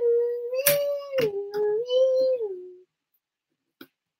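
A young child's voice holds one long, wavering 'oooo' note that steps down in pitch, a play siren for a LEGO fire truck. A couple of small plastic brick clicks sound under it, and the voice stops about three quarters of the way through.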